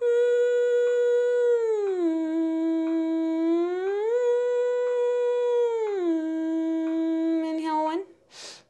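A woman humming one long held note on a closed mouth, sliding smoothly down about a fifth about two seconds in, back up near four seconds and down again near six seconds, a sliding-scale vocal warm-up. Faint metronome ticks fall about every two seconds beneath it.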